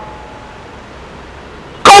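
A pause in a man's amplified speech, filled by a faint steady ringing tone and fading room echo from the public-address loudspeakers, typical of slight microphone feedback. Near the end he starts speaking loudly again.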